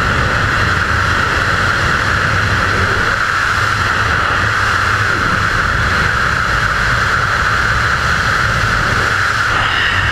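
Loud, steady rush of freefall wind over a GoPro camera's microphone during a skydive.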